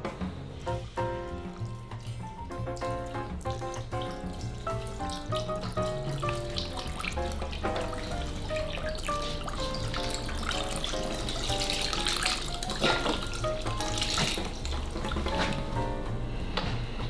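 Beef broth poured from a carton into a slow cooker: a steady splashing pour that builds from about six seconds in, under background music with a melody.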